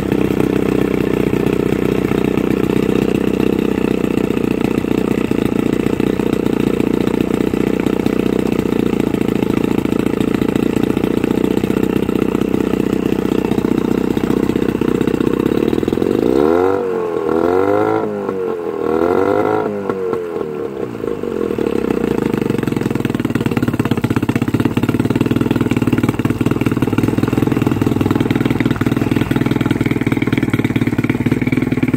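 Johnson 9.9 hp Sea-Horse two-stroke, two-cylinder outboard running steadily on a stand, fed cooling water from a garden hose at the lower unit. About halfway through, the revs rise and fall three times in quick succession, then it settles back to a steady run.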